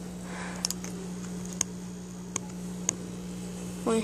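Steady low hum of a small aquarium air pump, with several light, sharp clicks scattered through it.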